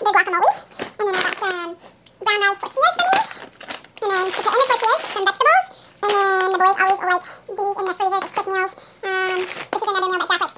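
A woman talking rapidly in unusually high-pitched, unintelligible speech, the sound of narration fast-forwarded to about double speed.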